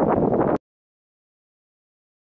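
Wind buffeting the microphone, cut off abruptly about half a second in, followed by dead silence.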